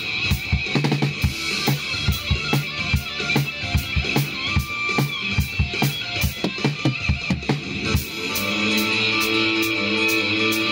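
Acoustic drum kit played in a steady rock beat of kick, snare and cymbals along with electric guitar music. About eight seconds in the kick and snare strokes thin out and held guitar chords come forward, with the cymbals still keeping time.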